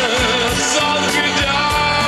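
Male pop singer's voice holding long, wavering notes over a full band backing with drums, in a slow pop ballad.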